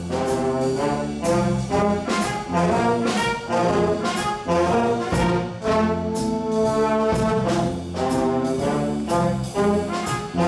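A jazz big band playing an ensemble passage: the brass and saxophone sections hit short, repeated chords together over drums, with no soloist.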